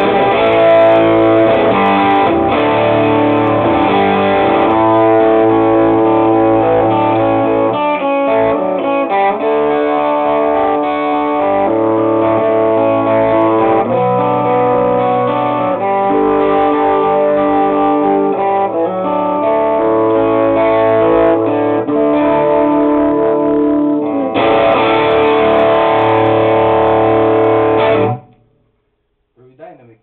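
Lap King Firebird Junior electric guitar with a P90 pickup, played through a Marshall 2061X amp on a crunch tone: chords and riffs whose grit follows how hard the strings are picked. A final chord rings for a few seconds and is cut off abruptly about two seconds before the end.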